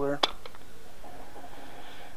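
A single sharp click a quarter second in, then a few faint ticks as hand tools are handled.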